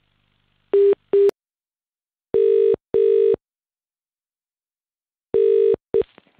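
British telephone ringback tone heard down the line as an outgoing call rings: the double ring, two short pips and then pairs of longer tones about three seconds apart, with a click after the first pair.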